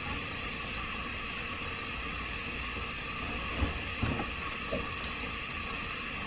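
Steady background hiss with a few soft computer keyboard key clicks a little past the middle, as a space and a letter are typed.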